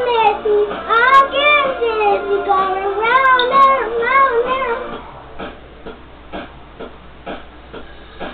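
A young girl singing, one wavering, bending vocal line for about the first five seconds. Her voice then stops, leaving a quieter backing-track beat that ticks evenly two or three times a second.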